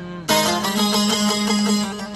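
Saz (long-necked lute) played solo in the Azerbaijani ashiq style: a fast run of plucked and strummed notes breaks in loudly about a third of a second in, over a steady drone string.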